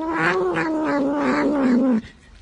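A tabby kitten giving one long, drawn-out meow that wavers throughout, dips in pitch near the end and cuts off sharply.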